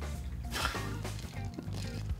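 Background music with a low bass line, over liquid poured in a thin stream from a metal cocktail shaker through its strainer into a glass.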